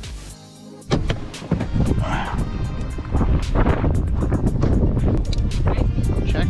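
Background music for about the first second, then a sudden cut to a vehicle engine running close by, loud and low, with scattered knocks and rustles.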